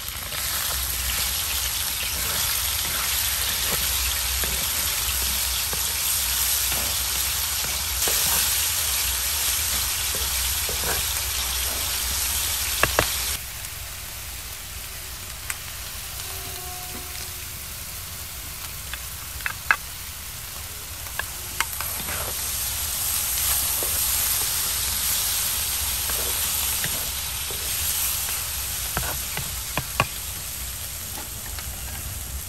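Chicken pieces sizzling as they fry in hot oil in an earthenware pan, stirred with a wooden spatula. The sizzle drops suddenly about thirteen seconds in, with a few sharp knocks, and swells back up a few seconds before the end.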